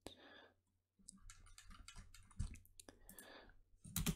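Faint, scattered clicks of a computer mouse used to scroll through code, over a near-silent room, with one slightly louder knock about two and a half seconds in.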